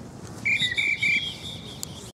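Referee's whistle blown in three short, high blasts in quick succession, starting about half a second in, with a fainter tail after them.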